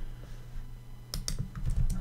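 Computer keyboard typing: a quick cluster of keystrokes about a second in and a couple more near the end.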